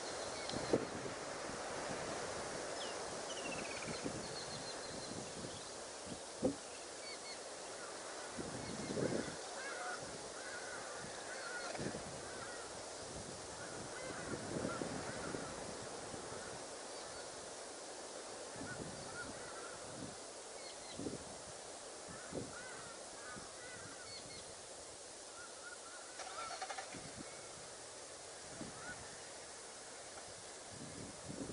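Many short bird calls over a steady outdoor hiss, with scattered soft knocks.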